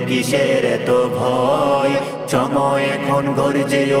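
Male voice singing a Bengali Islamic song (gojol) in a held, chant-like style, with several layered vocal parts sounding together. The notes are sustained and glide between pitches.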